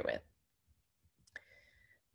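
A single short, soft click about a second and a half in, after a pause of near silence; a spoken word ends just at the start.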